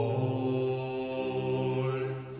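17th-century German sacred vocal concerto: singers holding long sustained notes, moving to new notes about half a second in.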